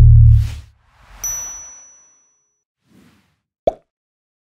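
Animated logo sting sound effects: a deep bass hit fades out, then comes a whoosh. About a second in, a bright ding rings on for over a second. A short pop follows near the end.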